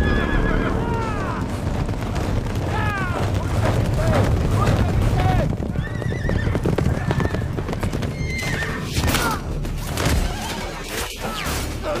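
Cavalry horses galloping in a dense, low rumble of hooves, with repeated neighs and whinnies rising over it.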